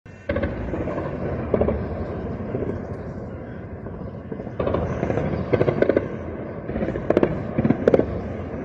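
Gunfire: scattered sharp shots, several of them in quick runs of two or three close together.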